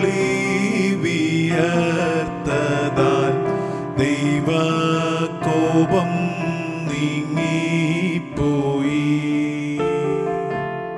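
Malayalam Christian devotional song: a male voice singing a hymn melody over programmed keyboard accompaniment.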